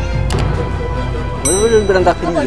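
Background music with an added sound effect: a click about a third of a second in, then a bright ding about one and a half seconds in, the sound of an on-screen subscribe button being pressed. A voice starts near the end.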